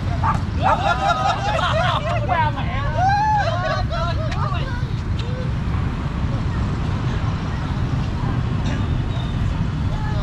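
Several people on the beach calling out and shouting over a steady low rumble of wind on the microphone; the shouting fills the first half and dies away after about five seconds, leaving the wind rumble.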